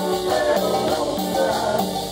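Live cumbia band music played through a stage sound system.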